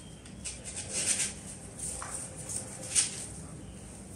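Artificial flower and leaf stems rustling and crackling as hands handle them and set them into floral foam, with a few short sharp taps among the irregular handling sounds.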